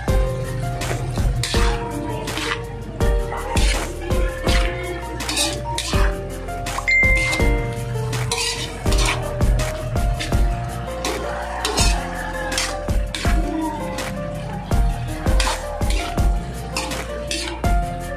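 Background music with a steady beat, over a spatula clinking and scraping against a frying pan as food is stirred.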